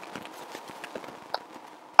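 A pause in speech: low room tone with a few faint scattered clicks and one short tick about a second and a half in.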